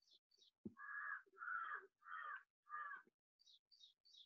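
A crow cawing four times in a row, faint and evenly spaced, each caw about half a second long.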